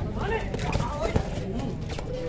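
Several voices of kabaddi players and spectators calling out over one another, with a single sharp click or slap a little after a second in.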